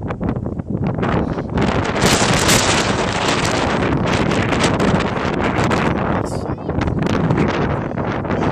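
Wind blowing hard across a phone microphone: a loud, uneven rush with gusts, heaviest from about two seconds in.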